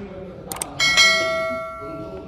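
A mouse-click sound effect, then a bright bell ding that rings out and fades over about a second: the sound effects of an on-screen subscribe button and notification-bell animation.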